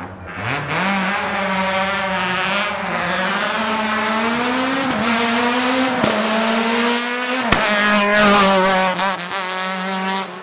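Škoda Fabia FR16 hill-climb race car accelerating hard uphill at full throttle. The engine note climbs in pitch, breaks sharply at each quick upshift (about five, six and seven and a half seconds in) and climbs again, loudest as the car passes close.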